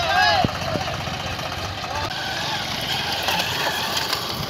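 A vehicle engine running steadily under people's voices. One voice calls out loudly in the first half second.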